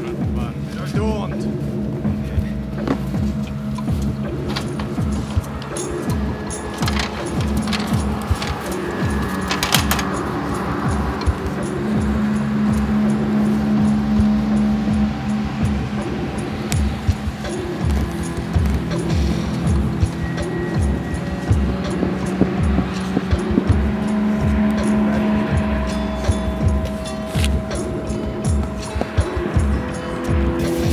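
Background music: sustained droning tones that shift slowly from chord to chord, over a repeating low pulse.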